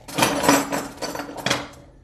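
Kitchen utensils and containers handled on a counter: a noisy clatter with a few sharp knocks, dying away before the end.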